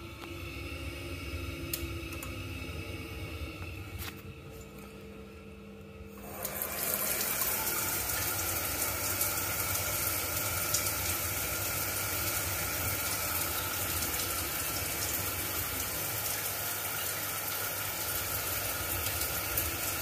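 A hot water tap running steadily, turned on about six seconds in after a quieter stretch with a faint hum. It draws hot water to test whether the boiler's dried-out flow sensor now registers demand.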